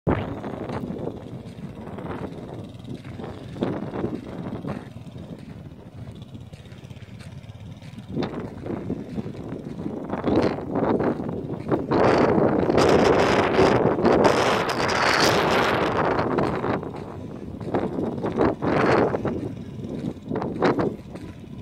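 Wind buffeting the microphone in gusts, loudest for several seconds past the middle, over the faint running of a distant four-wheeler ATV engine.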